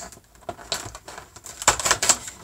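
Cardboard door of a NYX lippie advent calendar being popped and torn open: a few small clicks and crackles, loudest near the end.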